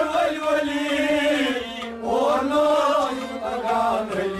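Male voices singing a Kashmiri Sufi devotional song over harmonium accompaniment, with a short break between phrases about halfway through.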